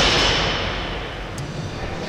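The echo of a loud bang dying away in a large hall, fading over about a second into low, steady room noise.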